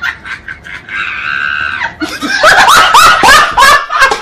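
A held high tone for about a second, then a loud run of about five short cries, each falling in pitch, over the last second and a half, like a laugh or a scream.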